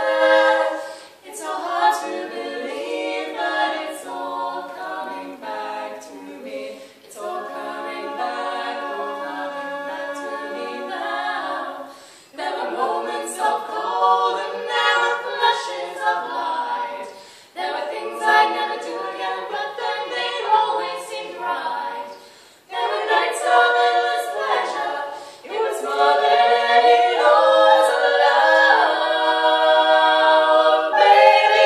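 Women's barbershop quartet singing a cappella in four-part close harmony (tenor, lead, baritone and bass), in phrases broken by short breaths. The singing grows louder near the end.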